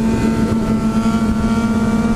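Sport motorcycle engines running at road speed with wind and road noise, a steady drone holding one pitch, heard from a rider's helmet camera as a second bike rides a wheelie alongside.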